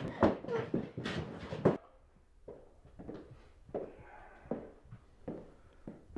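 A struggle: scuffling bodies and breathy, strained voice sounds, cut off abruptly about two seconds in. Then a quiet room with a few soft, evenly spaced thuds.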